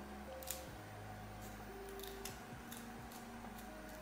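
Faint, scattered small clicks and ticks of a plastic tail comb working through baby hairs made stiff and crunchy by hairspray, over a low steady hum.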